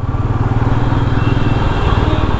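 Royal Enfield Meteor 350's single-cylinder engine running steadily under way at cruising speed, its even firing pulses heard from the rider's seat.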